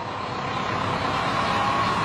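A car approaching and rolling onto a street manhole cover, its tyre and engine noise growing steadily louder.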